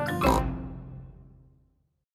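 Cartoon theme music ending on a final note that rings and fades out over about a second and a half.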